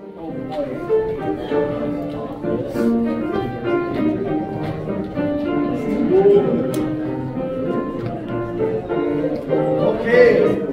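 Soprano and alto choir sections singing a passage together with piano accompaniment, in sustained notes.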